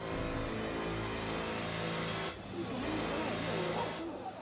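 A steady engine-like drone, with a voice heard briefly in the second half.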